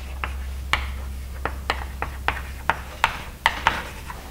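Chalk writing on a blackboard: about a dozen sharp, irregular taps and short scrapes as letters are written.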